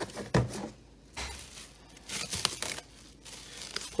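Saran Wrap plastic cling film being pulled off its roll and torn off, with crinkling rustles and a few sharp clicks.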